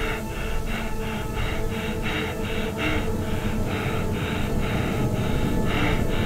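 An astronaut breathing fast and hard inside his spacesuit helmet, about three short breaths a second, over a steady low music drone.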